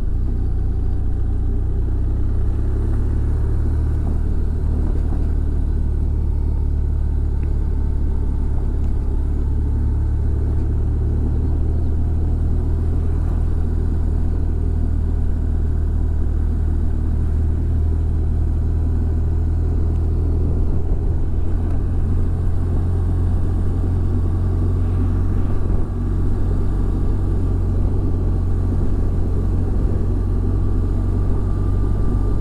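Motorcycle cruising at a steady pace, heard from on the bike: a continuous low engine drone mixed with wind and road noise.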